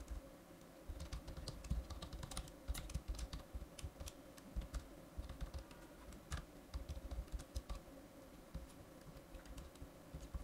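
Typing on a computer keyboard: faint, irregular keystrokes over a steady hum.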